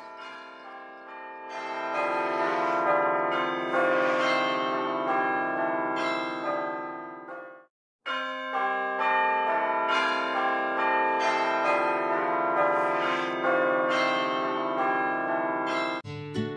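Church bells ringing together, many overlapping tones struck again and again. The ringing cuts off abruptly about seven and a half seconds in and starts again half a second later.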